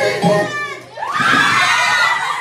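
Musical-chairs music cuts off about a second in, the signal for players to grab a seat, and a crowd of players and onlookers breaks into loud shouting and cheering as they scramble for the chairs.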